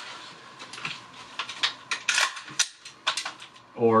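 Dry rifle handling: a quick run of a dozen or so sharp clicks and clacks of an AR-style rifle and its magazine being worked during a reload demonstration, starting about a second in and stopping shortly before the end.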